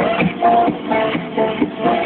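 Electronic dance music with a steady beat and a repeating synth line.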